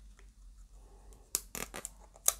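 Plastic wrapping on a smartphone being opened and peeled by hand: faint handling at first, then a few short, sharp crinkles in the second half.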